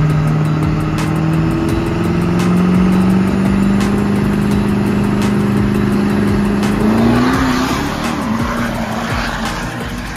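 Diesel Ford F-series pickup's engine held at high, steady revs at the start line, then launching about seven seconds in: the engine note rises and a rush of noise from tyres spinning in the dirt joins it.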